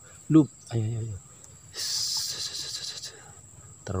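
A high, steady cricket-like insect trill runs throughout. About two seconds in, a hiss lasts a little over a second, with a short exclamation from the angler before it.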